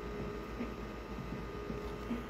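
Steady low hum and faint hiss of room background noise, with no distinct events.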